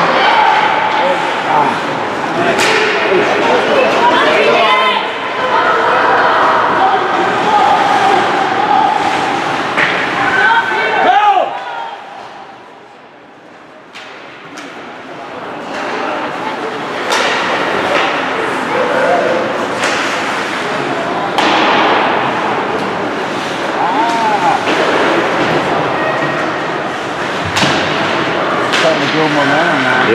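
Ice hockey game sound in an echoing rink: indistinct shouting voices with scattered sharp knocks of puck and sticks against the boards, easing off briefly near the middle.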